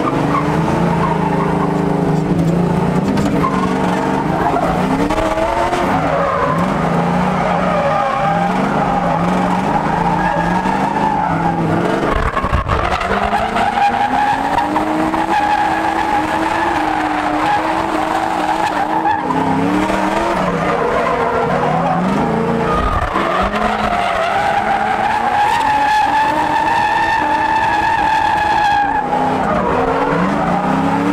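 Drift cars in a close tandem, engines revving hard with the pitch rising and falling on the throttle, and tires squealing in long sustained slides. There is a brief break in the sound about twelve seconds in.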